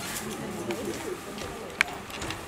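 Quiet stage-hall sound after a song: faint, indistinct voices, with one sharp short click or squeak near the end, likely a step or sneaker on the wooden stage floor.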